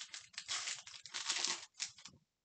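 Topps Heritage baseball card pack wrapper being torn open and crinkled by hand: a run of short crackles, with the longest stretch lasting about a second from half a second in.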